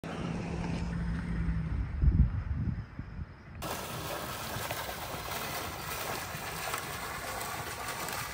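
Low outdoor rumble with a thump about two seconds in. Then, from about halfway, a decorative fountain's single water jet splashes steadily into its basin.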